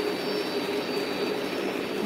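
Lionel model freight train running along three-rail track: a steady hum of its motor and rolling wheels.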